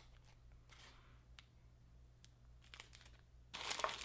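A clear plastic parts bag and its cardboard box being handled, making faint crinkling and rustling with a few small clicks, louder near the end.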